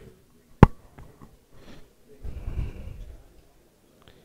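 A single sharp click a little over half a second in, then about a second of breathy rushing noise with a low rumble, like a breath or sniff close to the microphone.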